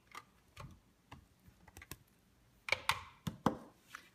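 Light clicks and taps of small plastic toys being handled: a toy car parked and a plastic figure lifted out, with a louder cluster of clicks about three seconds in.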